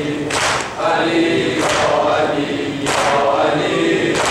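A mourning chant sung by a lead reciter with the congregation's voices joining in, over a slow, even beat of hands striking chests in unison, three strokes about one and a quarter seconds apart: the chest-beating (sineh-zani) that keeps time for a zamineh lament.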